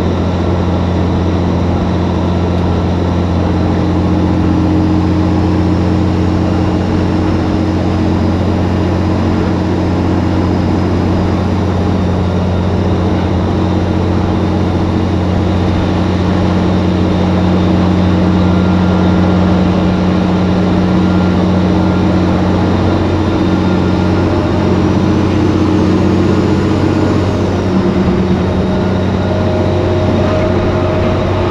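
Diesel engine of a cabover semi truck running steadily at highway cruise, a constant low drone with tyre and wind noise. Its pitch shifts slightly near the end.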